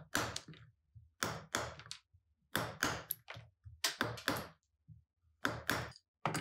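Mallet striking a wood chisel in quick, uneven blows, about two to three a second in small groups, each a sharp knock as the chisel chops waste wood out of a guitar body's control cavity.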